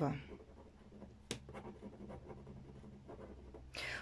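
Ballpoint pen writing on a sheet of paper on a wooden desk: faint scratching strokes, with one sharp tick about a second in.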